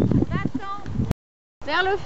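Hoofbeats of a horse cantering on grass, with voices over them. The sound cuts out completely for about half a second a little past the middle, then a voice comes back.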